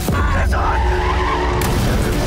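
Car tyres screeching in a skid, with a sudden bump about one and a half seconds in.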